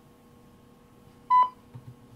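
A single short electronic beep, one steady pitch, about a second in, over a faint steady hum.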